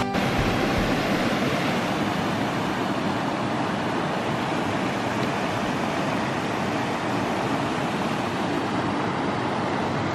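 Creek water rushing over rocks and small rapids: a steady, even rush of white water.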